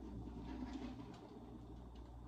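Quiet kitchen room tone: a faint steady low hum, with faint handling noise as a foil-covered tray is slid out of a toaster oven.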